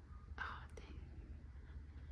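Faint sipping from a bottle of chocolate shake: one short breathy slurp about half a second in, then a couple of small clicks and quiet room tone.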